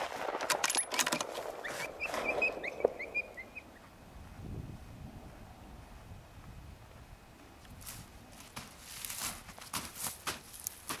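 Sharp metallic clicks and rattles from the hunter's rifle being handled just after a shot, then a few short high chirps about two seconds in, and near the end footsteps crunching through snow and dry grass.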